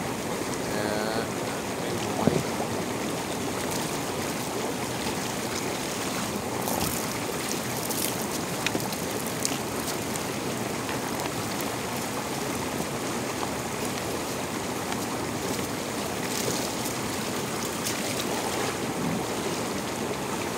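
Hot tub water bubbling and churning steadily, with a few faint knocks now and then.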